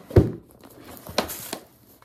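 A phone being put into a handbag: a soft thump just after the start, faint rustling of the bag and its contents, and two short clicks about a second in.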